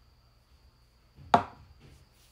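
One sharp knock about a second and a half in, from a plastic lipstick tube being handled.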